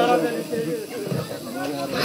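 Speech: a man's voice talking fairly quietly.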